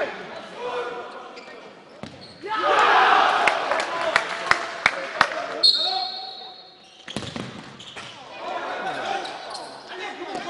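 Futsal ball kicks and bounces echoing in a sports hall, sharp knocks several times over players' shouts. About six seconds in, a single long whistle blast sounds from the referee's whistle.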